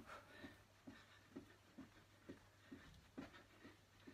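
Faint soft thuds of feet landing on a carpeted floor, about two a second, from skipping on the spot without a rope.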